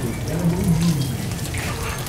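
Small fish frying in hot oil in a pan, sizzling steadily.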